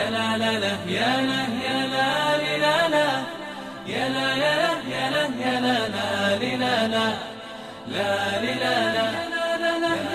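Background music: a melodic vocal chant sung in phrases of about four seconds, each separated by a short break.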